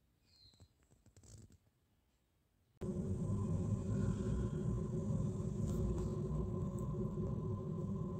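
Near silence with a few faint ticks. Then, a little under three seconds in, a steady background hum and hiss starts suddenly and carries on.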